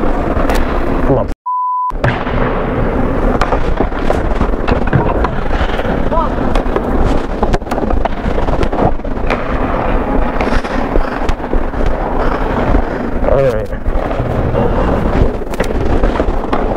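Distorted rumble and rustle from a body-worn Bluetooth microphone on a hockey goalie, with sharp clicks and knocks from sticks, pucks and skates on the ice. About a second and a half in, the sound cuts out for half a second with a short steady beep.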